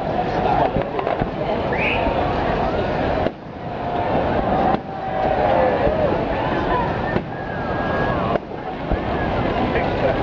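Fireworks going off in a series of bangs, with a crowd of spectators talking close by throughout.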